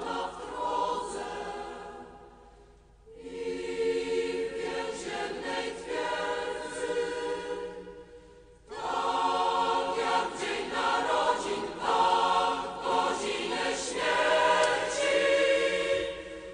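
Background choral music: a choir singing sustained chords in long phrases, breaking off briefly twice.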